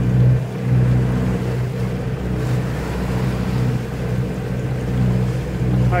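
A boat's engine running with a steady low drone while under way, mixed with wind and water rushing past the hull.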